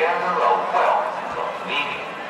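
Shouted human voices, with no music playing.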